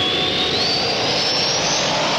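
A loud, even rushing noise with a thin whine climbing steadily in pitch, like a jet engine spooling up: a sound effect in the radio show's break transition.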